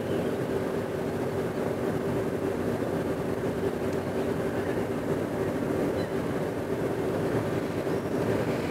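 A steady droning hum made of several held low tones over a noisy wash.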